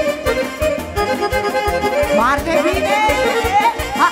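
Live band playing a fast traditional dance tune: two alto saxophones leading over a steady, even beat, with a run of quick upward slides in the melody about halfway through.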